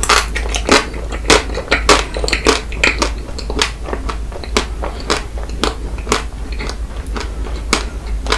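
Close-miked biting and chewing of a coated ice cream bar: the crisp shell cracks in many sharp, irregular crunches, two or three a second, over a steady low hum.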